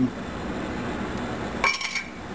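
Pull-tab lid of a tin can of tomato sauce being peeled open. A short metallic clink follows near the end.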